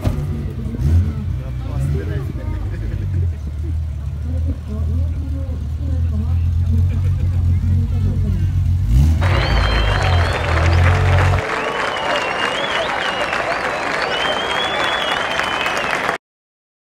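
Classic Nissan Skyline GT-R's engine idling with a deep, steady rumble that stops about eleven seconds in. From about nine seconds, crowd noise with voices rises over it.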